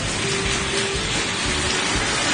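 Tap water pouring in a steady stream into a plastic bucket, with quieter background music underneath.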